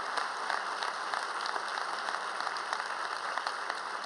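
Audience in a hall applauding, a steady patter of many hands clapping.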